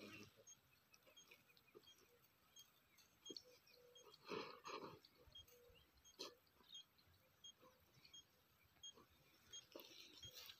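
Near silence, with faint, very short high pips repeating about every 0.7 s, and a brief voice about four seconds in.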